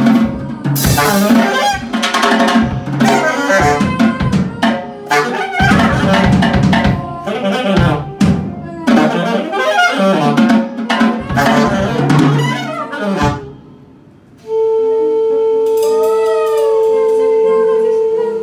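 Free-jazz improvisation: busy drum kit with saxophone, loud and dense, breaks off about thirteen seconds in. After a moment's lull, a long steady held note sounds with a higher, wavering line over it.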